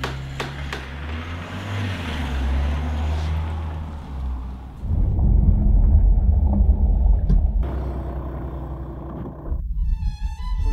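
Background music with a low drone, then about five seconds in a sudden cut to the low rumble of a car's engine and tyres heard from inside the cabin. It drops away sharply near the end.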